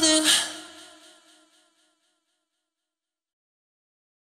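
The song's last held sung note, wavering with vibrato, fades out with the backing music within about a second and a half, leaving silence.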